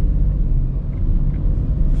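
Steady low engine and road rumble inside the cabin of a Hyundai HB20 hatchback with the naturally aspirated 1.0 three-cylinder engine, driving on a city street.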